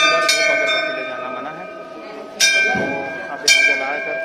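Brass temple bells rung by hand, each strike ringing on with several steady overlapping tones that slowly fade. One strike comes just after the start, and two more follow in the second half.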